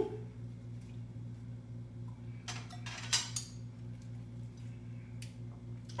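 Light kitchen clatter: a few short knocks and clinks of a utensil against cookware, mostly about halfway through, over a steady low hum.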